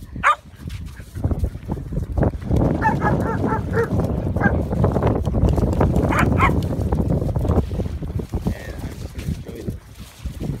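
Dogs at play barking and yipping: a short yelp just after the start, a quick run of yips about three to four seconds in, and two more calls near six seconds, over a steady low rumbling noise.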